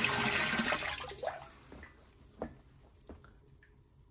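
A stream of recirculated water from the return outlet splashing into the filled tub, dying away over the first second or two as the water is shut off, followed by a few small drips and plops.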